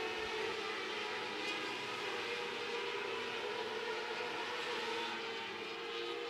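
600cc micro-sprint race cars running hard around a dirt oval: their motorcycle-type engines make a steady, distant, high drone.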